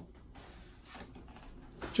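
Faint rustling of a paper mail envelope being handled.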